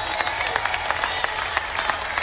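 Large arena crowd applauding: many hands clapping at once in a dense, steady patter.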